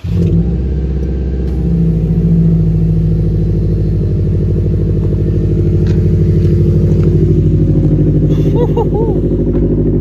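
2019 Subaru WRX STI's turbocharged 2.5-litre flat-four, with a Remark muffler-delete exhaust, catching on a cold start right at the beginning, rising a little after about two seconds and then holding a steady fast cold idle.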